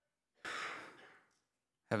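A man's single audible breath close to the microphone, lasting under a second about halfway in, before he starts to speak.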